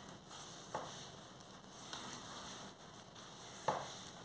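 Hands squeezing and kneading soft dough and loose flour in a metal mixing bowl: a faint soft rustling, with two light knocks, one just under a second in and one near the end.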